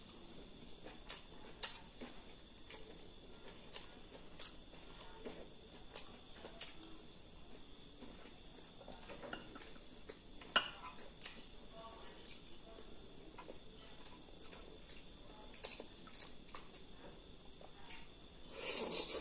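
Crickets trilling steadily and high-pitched in the background, with scattered sharp clinks of a metal spoon against ceramic bowls while eating, the loudest about ten seconds in.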